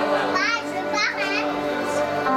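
A child's high-pitched voice calls out twice in quick, sharply gliding cries over steady background music of held chords, with murmuring from the crowd.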